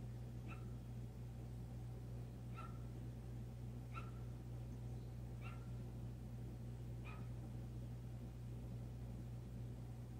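A pet whining faintly: five short high cries, roughly one every second and a half, over a steady low hum.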